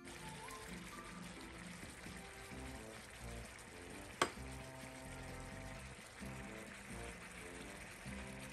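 Seafood mix of shrimp, squid and mussels frying in melted butter and garlic in a wok, a low, steady sizzle, with quiet background music underneath and one sharp click about four seconds in.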